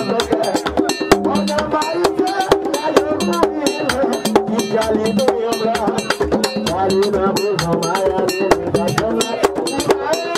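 Haitian Vodou ceremony music: drums and struck percussion play a fast, dense rhythm while a group of voices sings a chant over it.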